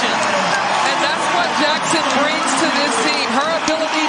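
Large arena crowd cheering and shouting, a dense steady wall of many voices, in reaction to a home-team basket.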